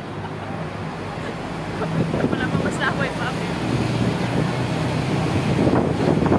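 Wind rushing over the microphone on the open top deck of a moving double-decker tour bus, over the steady low drone of the bus and street traffic, growing louder about two seconds in.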